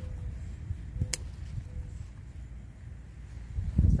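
A single sharp snip of hand-held garden scissors cutting through a pepper stem about a second in. Under it runs a low rumble of phone-handling noise, with a louder handling bump near the end.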